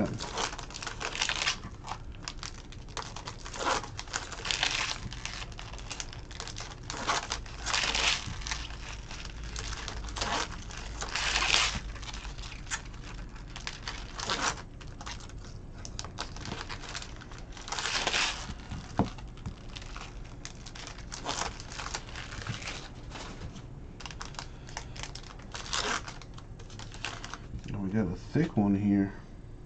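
Trading-card pack wrapper being crinkled and torn open by hand: a run of short crinkling rustles every second or two.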